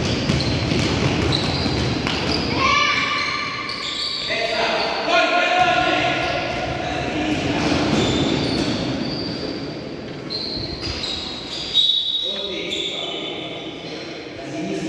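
A basketball bouncing repeatedly on an indoor gym floor during play, with voices calling out and echoing around the large hall. One sharp, loud thud stands out near the end.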